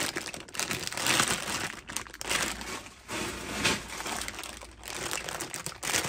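Clear plastic bags of die-cast toy cars crinkling and rustling as they are handled, in irregular bursts.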